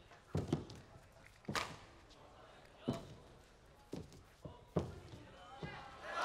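A badminton rally: sharp racket hits on the shuttlecock and the thuds of players' feet on the court, a handful of irregular strokes a second or so apart, in a large hall.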